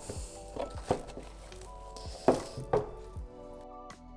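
Light background music with held tones, over several short knocks and scrapes of a plastic scoop digging into damp soil substrate in a plastic tub. The loudest knock comes a little past halfway.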